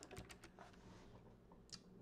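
Faint computer keyboard keystrokes: a few quick clicks at the start and a couple more near the end.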